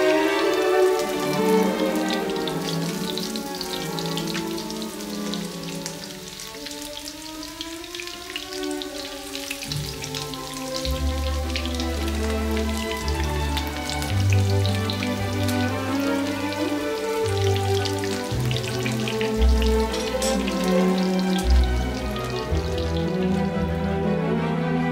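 Coated fish pieces shallow-frying in a pan of hot oil, with a dense, constant crackle and spitting. Background music with held notes plays over it, and low bass notes come in about ten seconds in.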